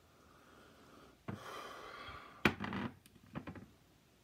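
A man's long, noisy breath through the nose, lasting about a second, followed by a single sharp knock and a couple of light taps, as of glassware being handled.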